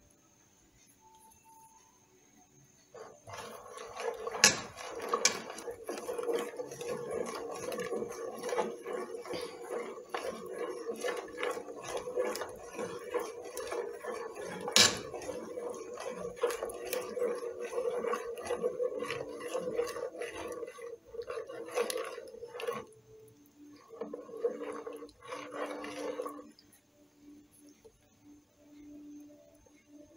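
A metal spoon stirring hot milk atole in a stainless steel pot, scraping and clinking against the bottom and sides. The stirring starts a few seconds in, with two sharper knocks of the spoon on the pot. It stops a few seconds before the end after a short final burst.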